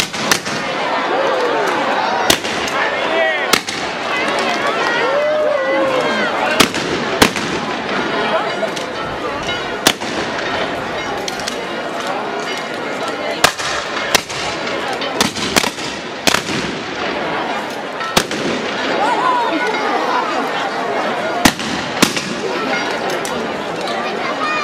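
Shotguns firing at a hanging rag-doll effigy: about fifteen sharp bangs at irregular intervals, some in quick pairs, over the continuous voices of a crowd.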